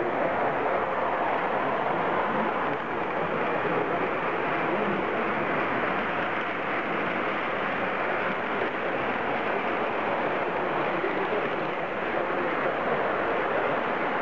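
O-scale model of a PKP SU46 diesel locomotive running along the layout track, with a steady, even running noise and no breaks, heard against the general hum of a busy hall.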